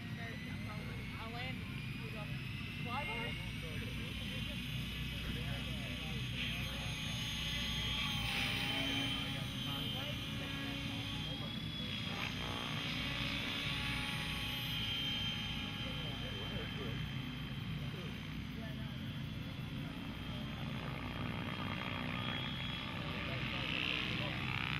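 Mikado Logo electric RC helicopter in flight: a steady whine from the motor and rotor blades whose pitch rises and falls as it manoeuvres. Voices murmur in the background.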